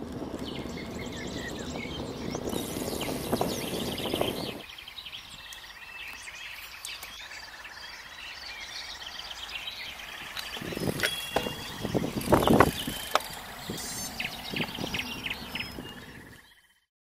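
Road bike rolling along a country lane, heard from a camera on the bike: wind and road noise on the microphone, with birds singing throughout. The wind noise is heavier for the first few seconds, drops away, then returns in loud gusts about two-thirds of the way through.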